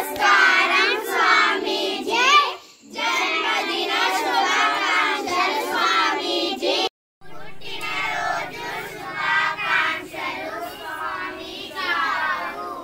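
A group of children's voices in unison, reciting a greeting together with palms joined, with a short break about a quarter of the way in and a sudden cut a little past halfway.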